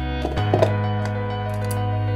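Soft background music of sustained keyboard-like chords, changing chord about half a second in. A few light knocks sound over it near the start and once more near the end.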